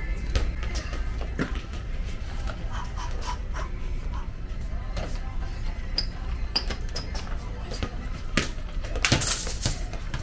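Faint background music over a steady low hum, with scattered light knocks and a louder burst of rustling noise near the end.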